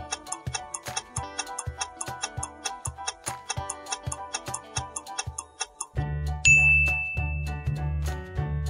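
Quiz countdown music: a light tune over a steady tick, about four ticks a second. About six seconds in it stops, a bright chime rings briefly to mark the timer running out and the answer being revealed, and a bass-heavy beat takes over.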